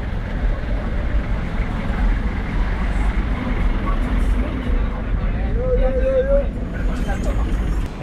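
Steady street noise among matatu minibuses: a low rumble of vehicles with voices in the background, and a short raised voice about six seconds in.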